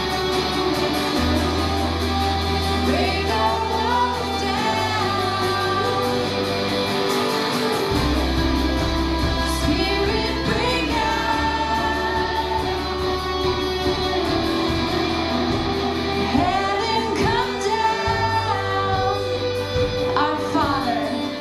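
Live worship band playing: acoustic and electric guitars, deep bass notes held for a few seconds at a time, and singing with a woman's voice among the singers.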